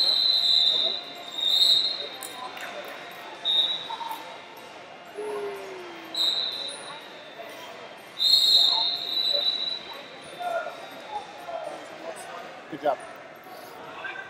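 Referees' whistles blowing in a large echoing gym: five steady shrill blasts, the longest and loudest about eight seconds in, over a hubbub of voices.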